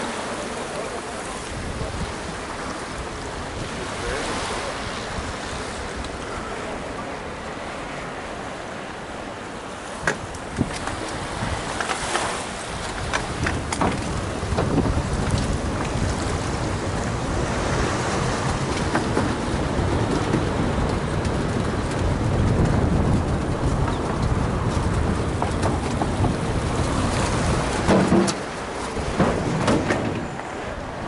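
Mountain bike ridden at race pace, heard from a camera on the bike: wind buffeting the microphone over tyre noise. About ten seconds in come a couple of sharp knocks. Then the ride turns louder and rougher, tyres rumbling over the textured deck of a floating walkway.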